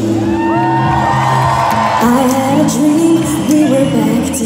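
Live electronic pop from a DJ set, with a woman singing a melody into a microphone over a steady bass, recorded from the audience.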